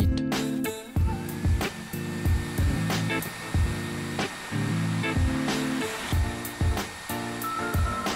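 Hair dryer switched on about a second in and blowing steadily, its motor whine rising as it spins up and then holding, over background music with a steady beat.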